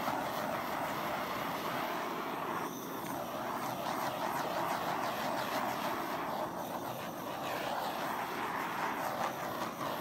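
Handheld butane torch hissing steadily as it is swept over wet poured acrylic paint, popping air bubbles and bringing out cells.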